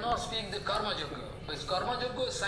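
A man speaking, more quietly than the surrounding lecture.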